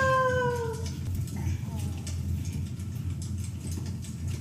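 A toddler's long, high-pitched squeal that slides slowly down in pitch and ends about a second in.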